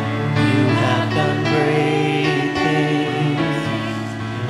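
Voices singing a worship song together in long held notes over a steady accompaniment.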